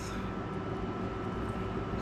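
Steady background hum and hiss, with a faint steady tone, like a running fan or other machine.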